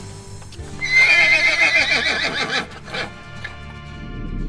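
A horse whinnies once over background music, starting about a second in and lasting about two seconds, its pitch wavering.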